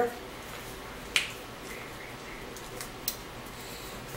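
A sharp plastic click about a second in, then two fainter clicks near the end: the cap being put back on a plastic lemon-juice squeeze bottle.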